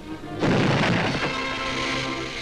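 Cartoon cannon-blast sound effect: a sudden loud boom about half a second in that fades over about a second, with the cartoon's music score playing through it.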